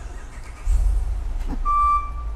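A deep low rumble, joined near the end by a single steady high-pitched electronic beep.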